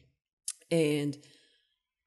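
A woman's voice says a single short word into a close microphone, just after a brief sharp click about half a second in.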